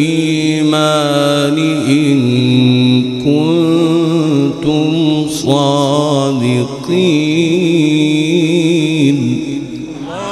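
A man reciting the Quran in the melodic chanted style, holding long ornamented notes with a wavering pitch. The phrase ends just after nine seconds in.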